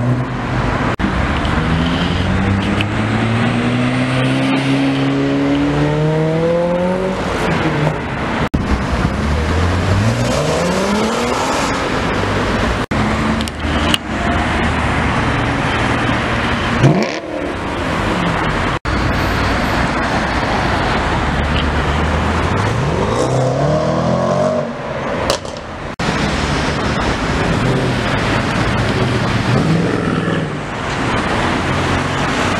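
Sports cars accelerating hard past the camera one after another, starting with a Lotus Elise pulling away. Each engine note climbs in pitch through the revs in several rising runs, and the sound breaks off sharply where one clip cuts to the next.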